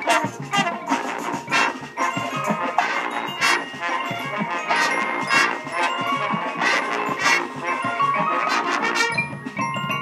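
Marching band playing: held chords from the brass and woodwinds, cut through by repeated drum hits, with mallet percussion from the front ensemble.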